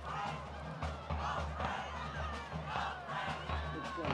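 Marching band playing: bass drums keep a steady beat of about two thuds a second under horns and percussion hits.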